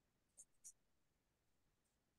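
Near silence with two faint short clicks, about a third of a second apart, under a second in.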